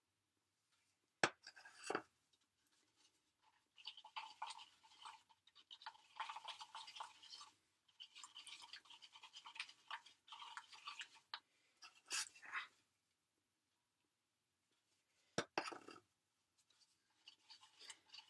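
Wooden tongue-depressor stick stirring a casting mix in a mixing cup, scraping around the bottom and sides in irregular scratchy strokes, with two sharp clicks of the stick against the cup about a second in.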